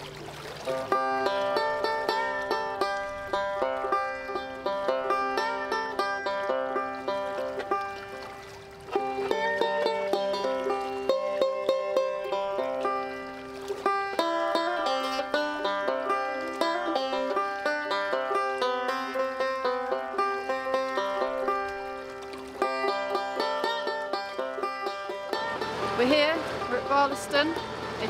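Banjo playing a plucked tune, with short breaks about 8 and 14 seconds in. The banjo stops a few seconds before the end, and a woman's speaking voice follows.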